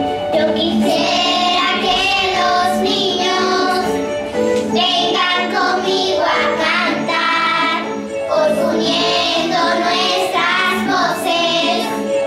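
A group of young children singing a song together in chorus, one voice amplified through a microphone.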